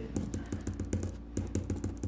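A pen writing quickly on a sheet of paper on a wooden desk: a rapid, uneven run of small taps and scratches as the characters are stroked in.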